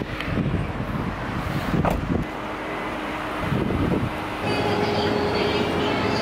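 Getting out of a parked car: clothes and bag rustling and a car door shutting with a sharp knock about two seconds in, over outdoor traffic noise. About four and a half seconds in, the sound cuts to a shop's steady indoor background with faint level tones.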